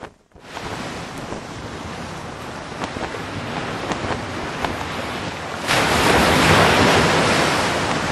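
Steady rushing of wind and sea water that jumps suddenly louder about six seconds in.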